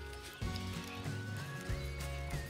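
Music with a stepping melody line over a steady low beat.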